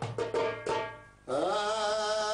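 A few hand strokes on a goblet drum, each ringing briefly and dying away; about one and a half seconds in, a singer comes in on a long held note with a slight waver.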